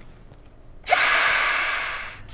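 Cordless drill spinning a rubber decal eraser wheel against an alloy wheel rim, scrubbing off old wheel-weight foam and adhesive. It starts about a second in with a quick spin-up, then gives a steady hissing grind that begins to fade near the end.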